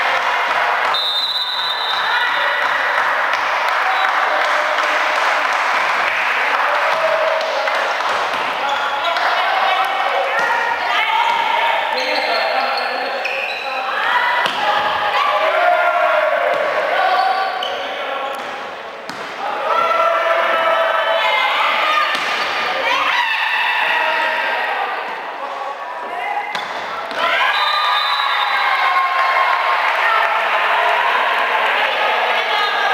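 Volleyball rally in a sports hall: players and spectators calling and shouting over crowd noise, with the ball striking hands and the floor.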